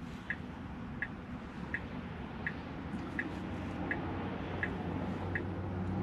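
Tesla turn-signal indicator clicking steadily inside the cabin, eight short, evenly spaced ticks a little under a second apart, over a low steady cabin hum while the car waits at the intersection.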